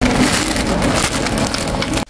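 Plastic shopping trolley rolling over a tiled floor, with a dense, steady rattling clatter.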